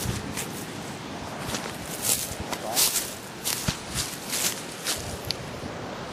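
Footsteps through tall dry grass and reeds, each step a brushing swish, about two a second at an uneven pace.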